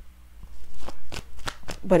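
Tarot cards being shuffled and handled by hand: a quick run of sharp card snaps over about a second.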